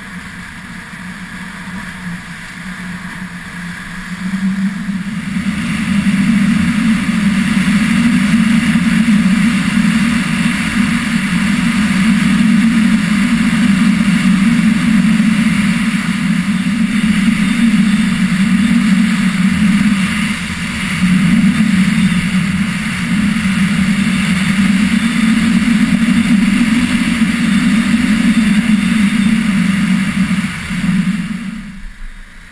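Wind rushing over the microphone of a camera carried down a groomed ski slope at speed, with the sliding hiss of snow underfoot. It swells over the first several seconds as speed builds, then runs loud and steady, easing briefly about two-thirds of the way through.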